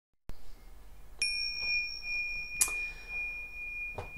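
A bell is struck about a second in and rings on with a long, steady high tone. A sharp, bright strike comes a little past halfway.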